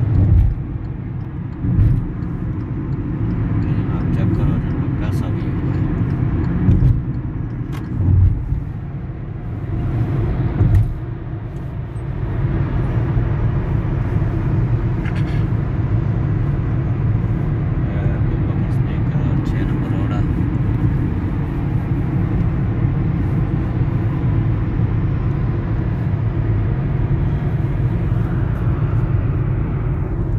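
Steady low rumble of a car driving at road speed, heard from inside the cabin: engine and tyre noise. There are a few brief thumps in the first dozen seconds.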